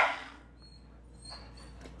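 A Ninja Auto-iQ blender's motor cutting out abruptly, its noise dying away within half a second and leaving near quiet with a couple of faint high tones. The blender is faulty: it runs only a second or two and then stops, and will not turn back on.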